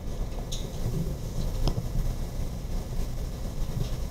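Room noise in a conference hall: a low, uneven rumble of movement and shuffling, with two short sharp clicks, about half a second in and near the middle.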